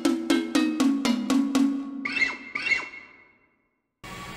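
Short musical jingle of quick, evenly spaced struck percussion notes, about four a second, like a wood block or cowbell with a pitched tone. About two seconds in it gives way to two sliding chime-like tones, which die away.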